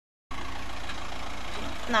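A brief dead silence at a cut, then a steady low background rumble, with a short spoken word near the end.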